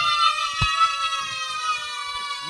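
A long, high-pitched cheering whoop, held and slowly falling in pitch, with a sharp click about half a second in.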